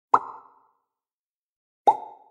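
Two bubble-pop sound effects, each a short plop that starts sharply and dies away within half a second. The second comes about a second and a half after the first.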